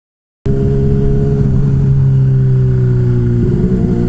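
Sportbike engine running at a steady cruise, heard from the rider's seat, starting abruptly about half a second in. Its pitch sinks slowly and wavers briefly near the end.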